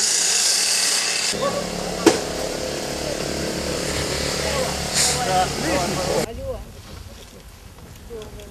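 The small motor of a rescue team's power tool running steadily with a low hum over a rush of noise, then cutting off suddenly about six seconds in. There is a sharp knock about two seconds in and brief voices.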